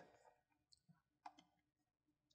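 Near silence, with one faint mouse click a little over a second in.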